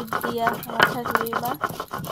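Stone roller rubbed and rocked over a flat stone grinding slab (shil-nora), grinding wet spice paste: repeated stone-on-stone scraping and knocking strokes.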